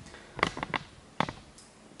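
Handling noise: a few light clicks and knocks, a quick cluster about half a second in and one more a little past one second.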